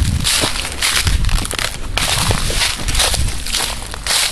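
Footsteps crunching and rustling through a thick layer of dry fallen leaves at a walking pace.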